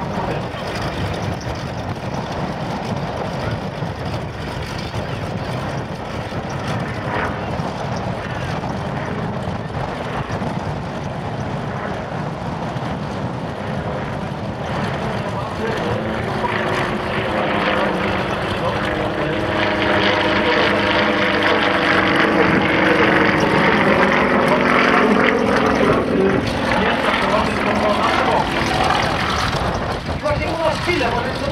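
Aerobatic biplane's piston engine and propeller droning overhead during a smoke-trailing climb. The engine tone comes in clearly about halfway through, grows louder, and its pitch shifts slightly as the plane manoeuvres.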